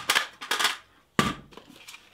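An FN PS90 being cleared by hand: a short scrape of handling, then one sharp, loud mechanical clack a little over a second in.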